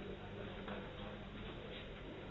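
A few faint taps of a marker on a whiteboard over a steady low room hum.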